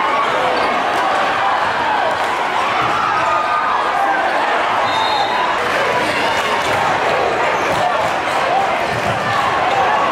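Basketball game in a gym: steady crowd noise of many voices talking and shouting, with a basketball dribbled on the hardwood court.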